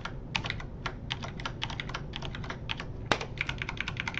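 Typing on a computer keyboard: a quick run of key clicks, several a second, with one harder keystroke about three seconds in.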